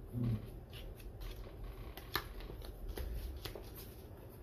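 Tarot cards being handled and shuffled: light papery clicks and rustles, with one sharper snap of card on card a little past halfway. A brief low hum comes right at the start.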